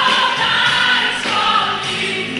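Pop song with several voices singing together over a band.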